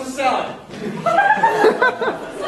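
A person's voice laughing and chuckling, breaking into wordless vocal sounds.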